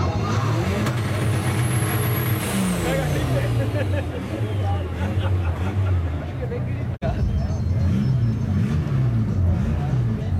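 A car engine running, its pitch falling several times, over the chatter of a crowd. The sound drops out for an instant about seven seconds in.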